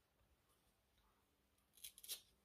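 Near silence, with one brief, faint scrape near the end from hands handling craft supplies on the desk.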